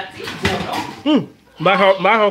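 Metal clatter and scraping of an electric range's oven door being pulled open during the first second, followed by a person's voice.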